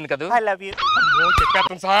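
Talking, then a high falsetto voice held for about a second, wavering rapidly up and down in pitch.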